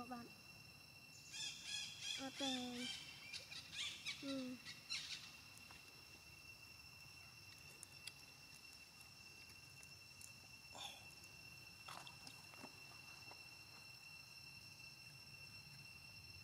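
Faint, steady high-pitched drone of chirping insects, with a run of short high-pitched chirping calls from about one to five seconds in and a couple of brief chirps later.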